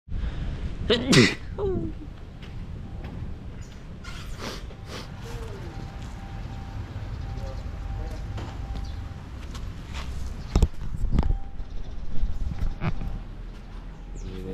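A short laugh and a 'wow' about a second in, then outdoor ambience with a steady low rumble, broken by a few sharp knocks later on.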